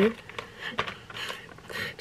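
A small plastic fork scooping smooth peanut butter from a jar, heard as a few soft, faint scrapes and handling noises.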